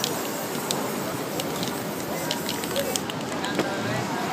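Aerosol spray-paint can hissing as paint is sprayed onto the painting, with scattered short clicks.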